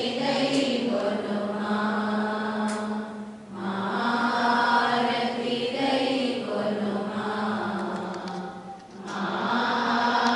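Devotional chanting sung in long held phrases during an aarti lamp offering. The chant breaks briefly about three and a half seconds in and again near nine seconds.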